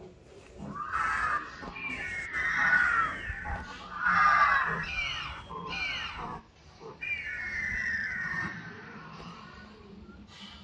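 Recorded dinosaur calls from the park's outdoor loudspeaker: a run of animal screeches and cries, several falling in pitch. They start about a second in and fade out near the end.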